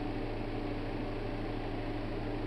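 Steady background hiss with a faint, even low hum: room tone during a pause in the talking.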